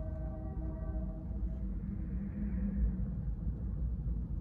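Open-air city background: a steady low rumble of distant traffic, with a distant pitched tone held for about a second and a half near the start.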